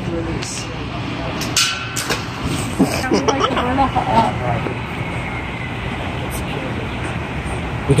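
Steady low hum of background noise, with a few sharp clicks about one and a half to two seconds in and indistinct voices around three to four seconds in.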